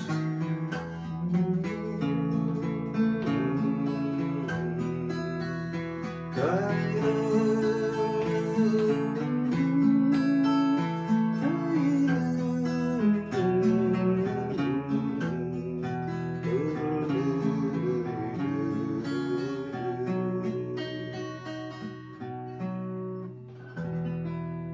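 Solo acoustic guitar playing an instrumental passage of a folk song, a melody of distinct plucked notes over bass notes, getting quieter near the end.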